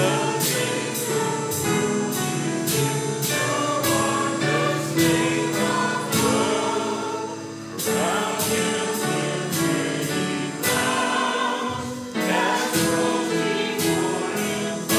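A congregation singing a hymn together, with instrumental accompaniment struck in a steady beat and brief pauses between phrases.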